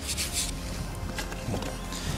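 A small brush scrubbing caked dirt off an excavated aluminium belt buckle, with a few quick rasping strokes in the first half-second, over quiet background music.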